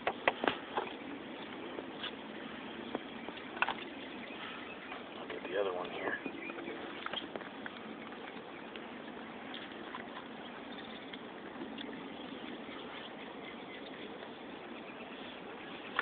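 Steady outdoor background noise with a few light clicks of hands handling a plastic scale tray near the start, and a brief faint voice a few seconds in.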